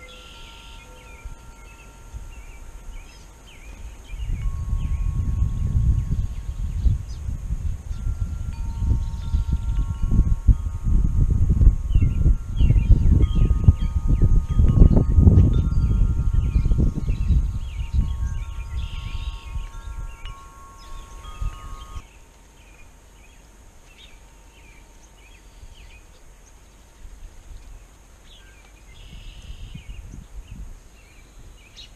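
Wind chimes ringing, several sustained tones overlapping, all stopping together about two-thirds of the way through. Gusts of wind rumble on the microphone through the middle, with faint, short bird chirps scattered throughout.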